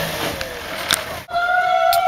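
Outdoor background noise, then about a second in a woman's long, high cry, a held squeal steady in pitch, starts abruptly.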